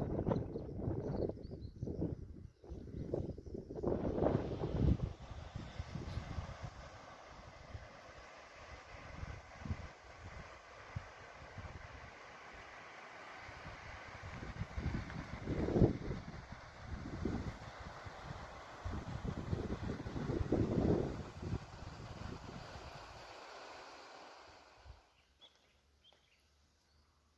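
Wind buffeting the microphone in irregular low gusts over a faint, steady outdoor background. The sound drops away suddenly about a second before the end.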